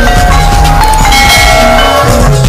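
Loud Javanese gamelan-style dance music: bell-like metal keyed instruments hold ringing tones over a steady low drone and quick percussion strokes.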